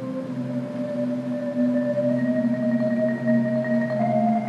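Percussion ensemble playing a slow, sustained passage: low held tones under a higher line that slowly rises in pitch, growing louder.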